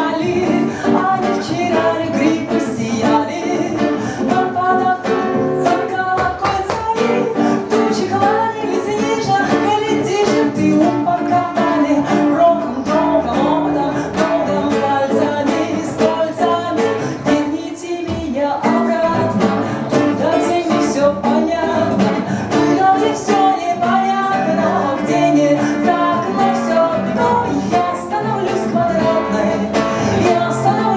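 A woman singing live to her own strummed acoustic guitar.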